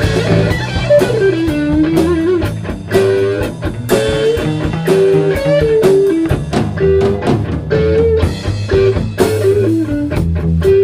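Improvised rock-blues jam with no vocals: electric guitar plays a lead line with slides and bends over bass guitar and drum kit.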